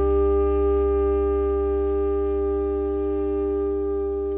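Jazz music: two reed horns hold one long, steady chord over a sustained low bass note, the whole chord slowly fading.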